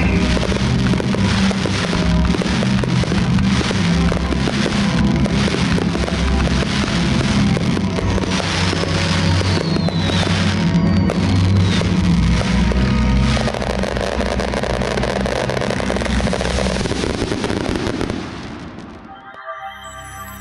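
Fireworks display, with ground fountains and aerial shells giving a dense run of crackles and bangs over loud music. The music and fireworks fade out near the end.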